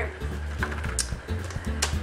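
Background music with a steady, pulsing low bass, and a few brief high clicks over it.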